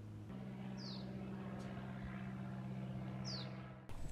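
Two short, falling bird calls, about two and a half seconds apart, over a steady low hum; the sound cuts off just before the end.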